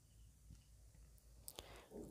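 Near silence with a couple of faint clicks about one and a half seconds in.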